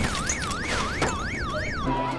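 Electronic alarm wailing, its pitch sweeping up and down about three times a second, set off as the wall crashes in; it stops just before the end.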